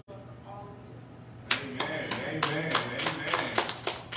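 Hand clapping in a quick, even rhythm of about five claps a second, starting about a second and a half in, with a voice talking over it.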